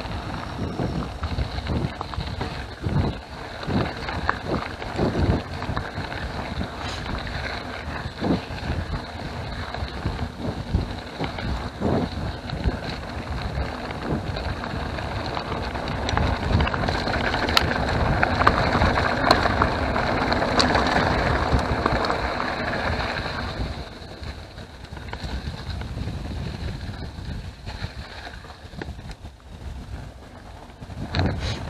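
Mountain bike rolling over a gravel track: tyre crunch and knocks and rattles of the bike over bumps, with wind on the microphone. The sound grows louder for several seconds past the middle, then drops quieter.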